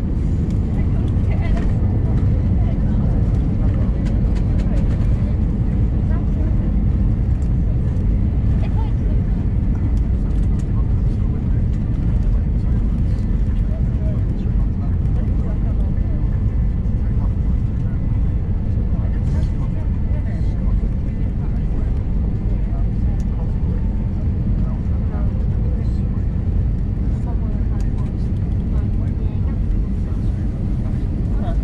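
Steady low rumble of an Airbus A321 airliner taxiing, heard from inside the cabin: engine and rolling noise at an even level throughout.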